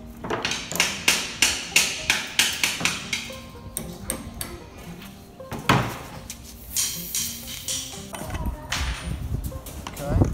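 Hammer driving nails into plywood on a wooden workbench: a quick run of blows about three a second for the first few seconds, then scattered strikes. Background music runs underneath.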